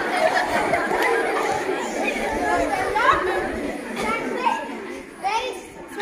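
Many girls' voices talking and chattering over one another, growing quieter near the end.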